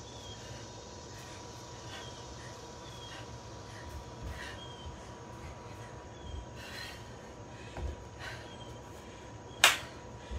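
A 30 lb kettlebell being swung, heard as faint short swishes and breaths about once a second over a steady hum, with a few low thuds late on. A single sharp clap comes near the end.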